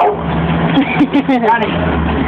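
A small engine running steadily with a low, even hum.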